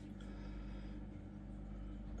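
Quiet, steady low hum of running aquarium equipment.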